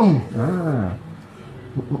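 A man groaning aloud twice while his arm is pulled and manipulated in a bone-setting treatment: one long cry that falls steeply in pitch, then a second that rises and falls.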